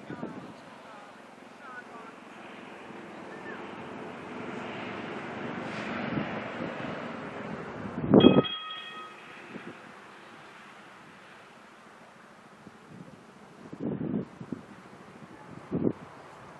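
Wind on the microphone over outdoor arena noise, while a show jumper canters. About eight seconds in, as the horse jumps a rail fence, there is one loud knock with a brief ringing after it. Smaller thuds from the horse's hooves come near the end.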